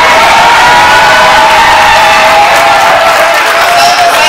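A large crowd in a hall cheering and applauding loudly and steadily, with a few long-held high calls carrying over the noise.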